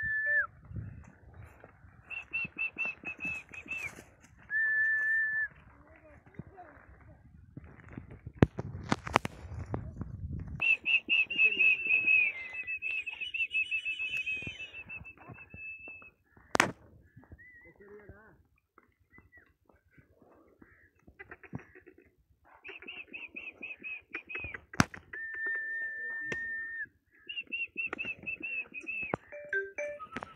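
Whistling: a series of long, held high notes, some with a fast wavering trill, in separate phrases, with a few sharp clicks in between.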